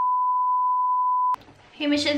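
Steady single-pitch test-tone beep, the bleep that goes with a television colour-bars test card, cutting off suddenly about two-thirds of the way in.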